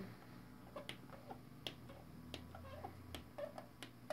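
Faint, irregular clicks, about a dozen, from the front-panel button of a Harman Kardon AVR 35 receiver being pressed repeatedly to cycle surround modes while the audio is muted. Some clicks have a brief faint squeak after them.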